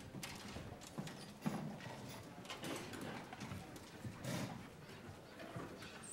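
Footsteps, shuffles and knocks on a stage as string players walk to their seats and settle chairs, stands and instruments, with one sharper knock about a second and a half in.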